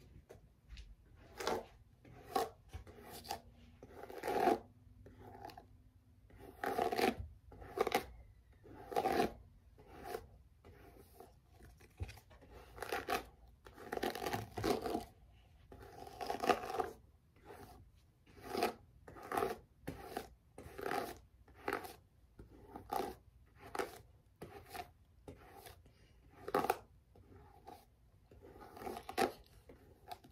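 Paddle hairbrush drawn through long hair, a scratchy swish roughly once a second, stroke after stroke.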